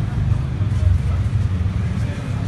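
Low, steady rumble of road traffic close by, heard through a phone's microphone.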